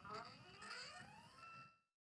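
Sky-Watcher NEQ6-Pro equatorial mount's stepper motors slewing the telescope toward an alignment star. The faint whine rises in pitch as the motors speed up, settles into a steady whine, then cuts off suddenly near the end.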